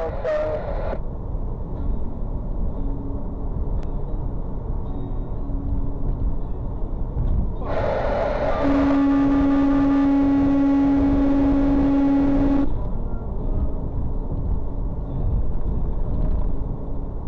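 Steady road and engine rumble heard from inside a semi-truck's cab, with an air horn blasting once about halfway through: a single held, loud note lasting about five seconds, aimed at a car cutting in ahead.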